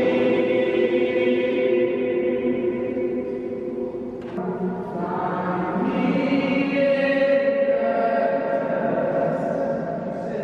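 A small mixed choir singing a cappella under a conductor in a stone church, holding long chords; the sound thins in a short break about four seconds in, then the next phrase starts.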